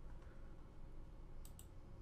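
Two quick computer mouse clicks about one and a half seconds in, a mouse button clicking on a settings tab, over a faint low room hum.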